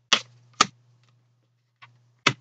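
Tarot cards handled and set down on a table: two sharp card slaps about half a second apart, then a fainter one near the end.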